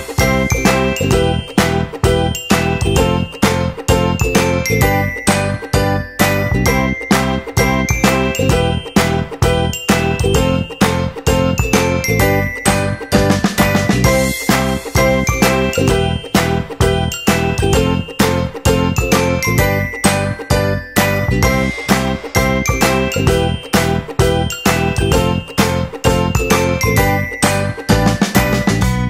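Upbeat background music with a steady beat and a bright, high melody.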